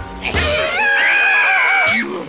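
A cartoon character's long, high-pitched scream, wavering in pitch, starting just after the start and cutting off suddenly at the end.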